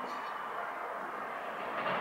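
Steady outdoor background noise with no distinct events, of the kind distant traffic makes.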